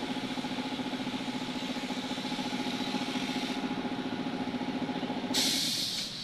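Car-wash pressure-washer pump running with a steady hum and a rapid even pulse, with the hiss of spray over it. Near the end a loud burst of hiss, then the hum stops.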